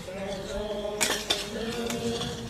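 Steel shovels and a pick scraping and striking into stony limestone rubble while filling a grave, with sharp clinks about a second in. A group of voices sings a held hymn underneath.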